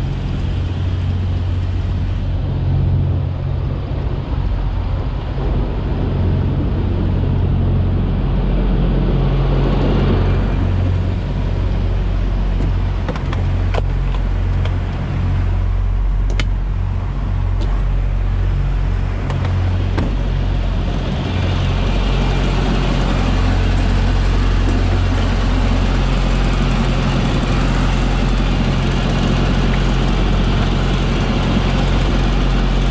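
Heavy diesel engine idling with a steady low hum, with a few sharp clicks and knocks in the middle.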